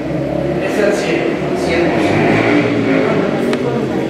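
A man reading aloud, with a low rumble beneath the voice that is strongest in the first couple of seconds.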